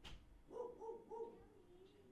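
Faint animal calls in the background: three short pitched calls in quick succession, then a longer wavering note, after a single click at the start.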